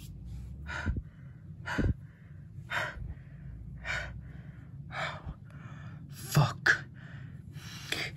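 A person gasping and breathing heavily, about one sharp breath a second with softer breaths between, and two quick gasps close together near the end.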